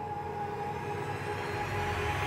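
Dramatic background score of sustained held tones, with a hazy swell that builds during the second second.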